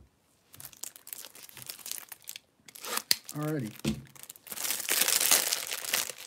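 Plastic packaging crinkled and torn by hand, in irregular crackling spurts that become loud and continuous over the last second and a half.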